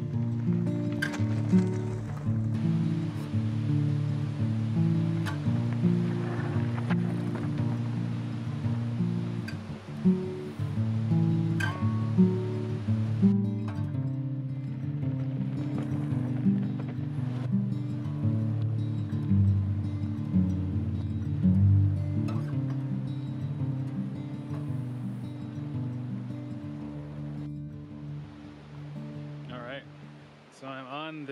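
Instrumental background music, its notes changing every half second or so, fading out near the end.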